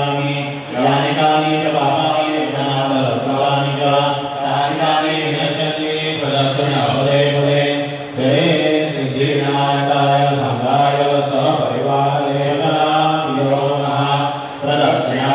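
A man chanting Hindu mantras on a steady, low pitch, with brief breaks for breath about a second in and about eight seconds in.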